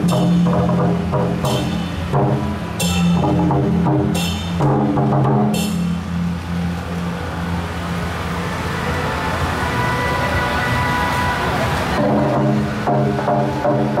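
Temple procession music with steady, droning pitched tones and percussion, a sharp clash about every second and a half through the first half, then a denser, hissier stretch with higher held tones before the clashes return near the end.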